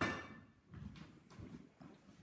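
A sharp knock, then a few soft, irregular taps: a knife and meat being handled on a wooden cutting board.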